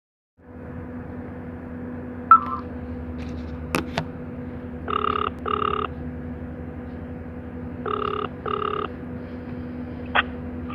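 Telephone ringback tone over a phone's loudspeaker: two double rings about three seconds apart over a steady line hum, with a sharp click shortly before the first. The call is ringing and not yet answered.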